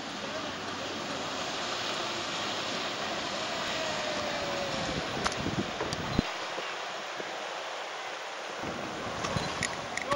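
Steady wind noise on the microphone, with a motorboat's engine faintly heard passing, its tone dropping a little in the middle. The low rumble of the wind drops away for a couple of seconds past the middle.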